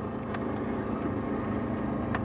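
A single sharp click from a power switch on portable video equipment, about a third of a second in, over a steady low mechanical hum.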